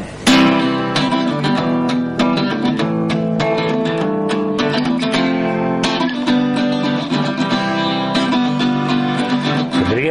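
Instrumental introduction to a song, led by plucked and strummed acoustic guitar over held low notes, starting sharply a moment in.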